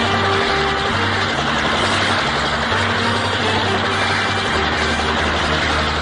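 Steady vehicle engine noise in a film soundtrack, mixed over background music with a low, stepping bass line.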